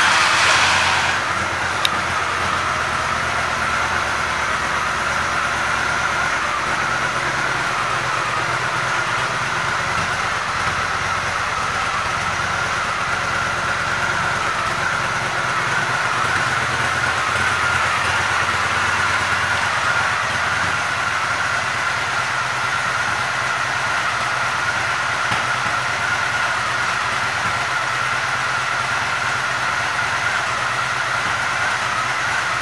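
Honda Shadow Spirit 750's V-twin engine idling steadily just after starting up, a little louder for the first second before it settles to an even idle.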